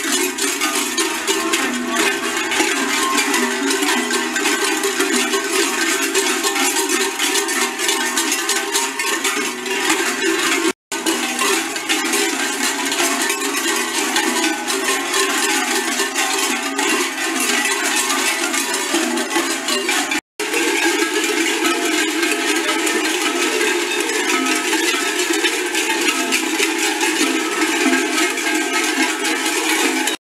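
Many large metal bells worn at the backs of zvončari clanging together continuously as the group walks and sways in step, a dense jangling din broken twice by brief gaps.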